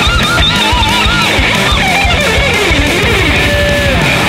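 Distorted electric lead guitar holding notes with a wide, fast vibrato, then playing a quick descending run and ending on a held note that sags slightly in pitch, over a full heavy rock band backing with drums.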